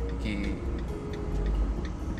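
Car turn-signal indicator ticking steadily inside the cabin of a Maruti Suzuki Vitara Brezza, over the low rumble of the moving car.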